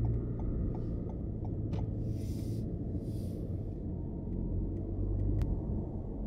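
Steady low rumble of a car's engine and tyres heard from inside the cabin while driving slowly, with two short hissy swells in the middle and a few faint ticks; the low hum fades near the end.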